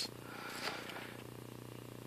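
A faint, steady low hum with light hiss underneath.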